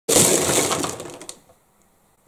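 A tower of Copic Sketch markers collapsing: a sudden dense clatter of plastic marker barrels knocking against each other and hitting the floor, thinning to a few last clicks after about a second and a half.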